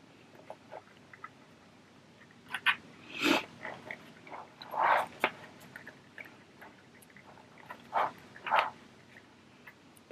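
Fabric being shifted and handled, rustling in about half a dozen short bursts. A few light clicks come in between as small sewing clips are put on the edge.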